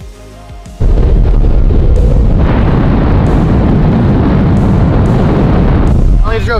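Loud wind rushing over the microphone of a camera in a moving car. It cuts in suddenly about a second in, after a short stretch of music.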